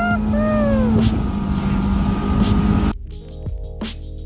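Bass boat's outboard motor running steadily at speed, with wind and water rushing past, and a voice calling out briefly near the start. About three seconds in, it cuts off abruptly to background music.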